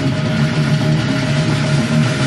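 Death metal band playing live: heavily distorted, low-tuned guitar riffing over a full drum kit, a dense and steady wall of sound.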